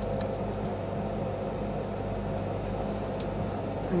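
Steady electrical hum of running vintage television camera and control equipment, several steady tones held over a low haze, with a couple of faint clicks.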